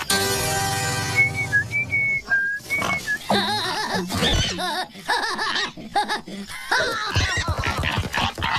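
Cartoon soundtrack: a buzzing tone, then a few short whistled notes, then a cartoon character's wavering wordless vocalizing over music.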